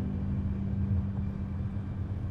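Steady low rumble of a car driving, heard from inside the cabin, with a steady low hum that stops near the end.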